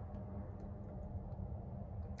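Faint steady low hum inside a vehicle cab, with a few faint ticks.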